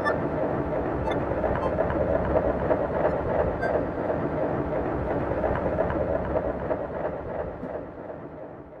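Dense, noisy electronic drone from an Elektron Analog Four synthesizer looped in an Empress Zoia, with a rumbling band of noise and no beat. It begins to fade out near the end.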